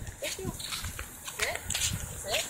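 A pit bull whimpering during a bath, giving short rising whines, once just after the start and again about a second and a half in.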